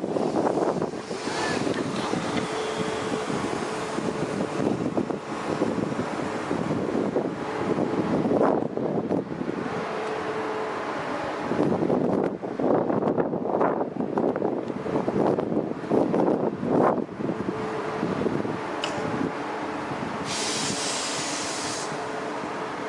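Wind gusting on the microphone over the steady running noise of electric trains standing at a station platform, with a faint steady hum coming and going. A brighter hiss starts near the end.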